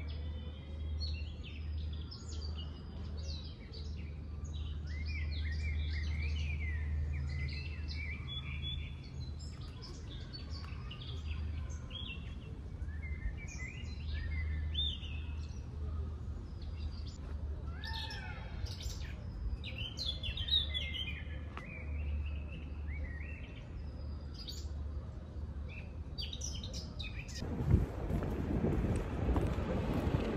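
Songbirds chirping and singing in the trees, short calls and quick sweeping phrases overlapping throughout, over a low steady hum. A louder rush of noise breaks in near the end.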